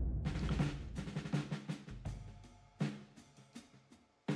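Short drum-based music sting for an animated logo: a low boom dies away over the first two seconds while a quick run of drum hits plays over it, the hits growing sparser in the second half.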